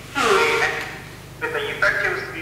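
Speech over a video-call link, played through the lecture room's loudspeakers, with a short breathy sound near the start, over a steady low hum.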